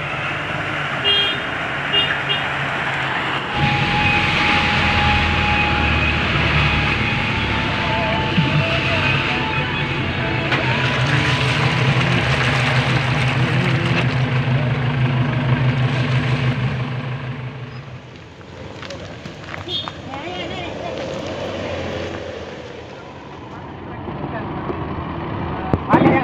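Off-road 4x4 vehicle engines running as they drive along a muddy track, a steady engine drone that is loudest through the middle and drops away after about 18 seconds.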